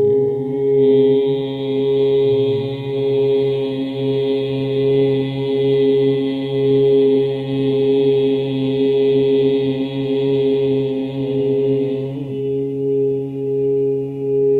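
Singing bowls ringing in a sustained drone of several steady tones, swelling and fading in loudness about once a second. A higher chant-like drone joins about a second in and drops away about two seconds before the end.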